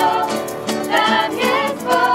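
Small group of young voices, mostly women with one man, singing a Polish worship song together, accompanied by a strummed acoustic guitar.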